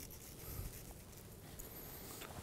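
Quiet room tone with a few faint, light handling sounds.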